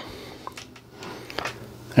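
A few soft clicks and taps from handling a small tripod fluid head as its tilt lock is loosened and the camera is let tilt down, with low room noise between them.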